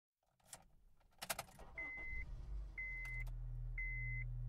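A few clicks, then a vehicle's warning chime beeping about once a second, each beep about half a second long, over a low steady hum.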